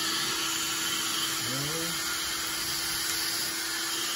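Seven Magic handheld hair dryer switched on and running steadily: a loud, even rush of blown air with a steady motor hum beneath it.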